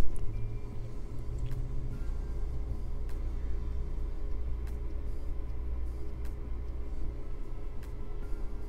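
Soft background music with a low, steady bass line, and a few faint clicks scattered through it.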